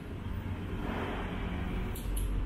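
Steady background ambience: an even low rumble with a faint hiss, with no distinct events.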